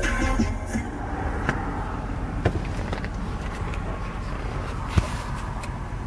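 Bass-heavy music from a car stereo with two Audioque HDC-A 15-inch subwoofers fades out within the first second. A steady low rumble and a few sharp clicks follow, the loudest click about five seconds in.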